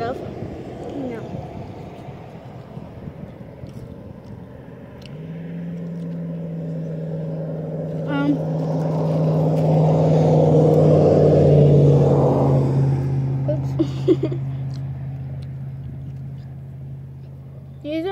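A motor vehicle driving past: a steady engine hum and tyre noise swell over several seconds, peak about two-thirds of the way through, drop in pitch as it goes by, then fade away.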